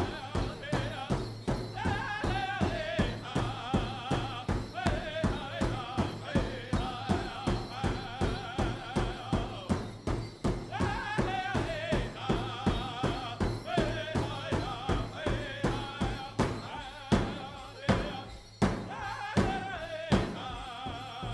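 Ojibwe big drum (powwow drum) struck in unison by several drummers with padded sticks in a steady beat of about three strokes a second, under a group of singers' high, wavering powwow song. A couple of louder, accented strokes come near the end.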